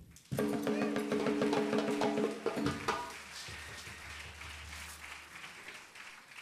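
A short instrumental flourish on percussion: a fast roll of repeated strikes holding a few pitched notes for about two seconds, a few more strikes, then a ringing fade.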